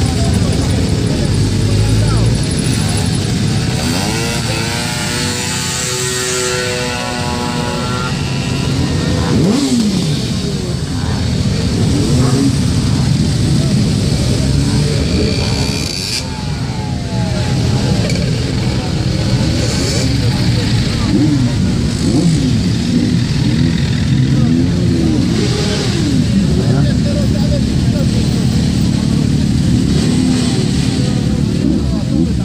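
Many motorcycle and scooter engines idling together in a packed group. Individual engines are revved now and then, rising and falling in pitch, more often in the second half, over a background of voices.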